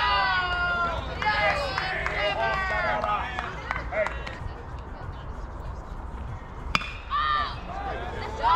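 Players and spectators shouting and calling out across a baseball field in high-pitched yells, heaviest in the first few seconds and again near the end, with a single sharp crack about seven seconds in.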